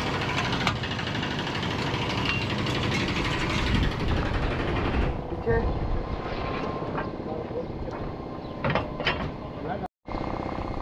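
Workshop noise: a dense, rapid mechanical rattle for about five seconds, then a lighter stretch with a few sharp metal knocks near the end, as steel tools are worked against a truck's chassis frame.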